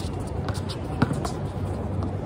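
Basketball bouncing on an outdoor hard court: a few sharp thuds, the loudest about a second in.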